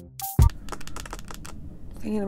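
Edited-in electronic background music with a beat cuts off about half a second in. It is followed by a run of faint quick clicks and taps over a low room hum.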